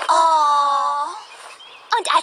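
A single drawn-out vocal cry, about a second long, slightly falling in pitch.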